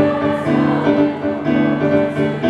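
Small student choir singing a traditional Japanese song in harmony, with sustained notes, accompanied by an electronic keyboard.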